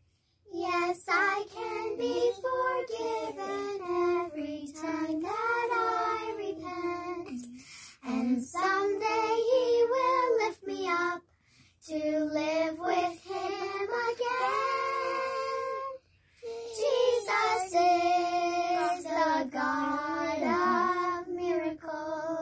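A small group of young children singing together unaccompanied, in sung phrases with two brief breaks for breath.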